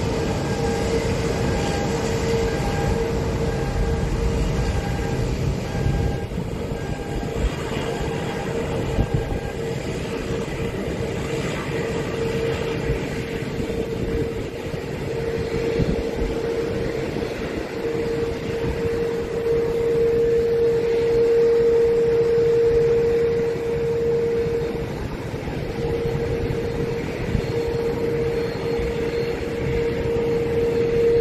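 Jet engines of a Boeing 787 at low taxi power, heard from a distance: a steady whine that swells and fades, strongest a little past the middle, over a low rumble.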